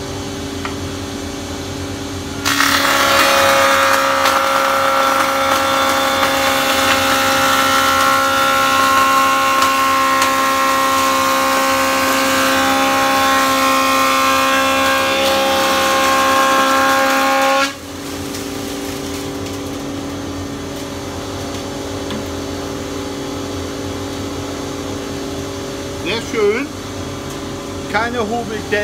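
Holzmann HOB 305 Pro planer-thicknesser running as a jointer with dust extraction on. About two and a half seconds in, an ash board is fed over the cutterhead and the machine gets much louder, with several steady whining tones, for about fifteen seconds while it takes a cut of almost 3 mm. It then drops back to its steady running hum.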